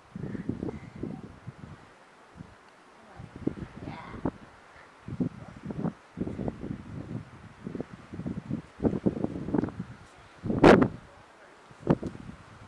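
Gusty wind buffeting the microphone, coming and going in irregular low rumbles. Near the end there is one short, loud, hissing burst, the loudest sound here.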